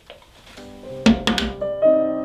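Piano music starts about half a second in with held chords. Two quick thunks come just past the middle.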